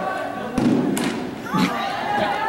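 Impacts from close arena polo play on a dirt surface: a heavy dull thump about half a second in, then a short sharp knock about a second in, with another dull thump near the end.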